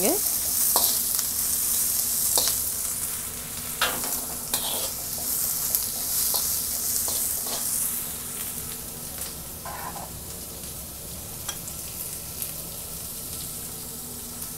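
Diced onion, capsicum and cabbage sizzling in hot oil in a wok on high heat while a slotted spatula stirs and scrapes them around. The spatula strokes come every second or two through the first half, then thin out to a steadier, quieter sizzle.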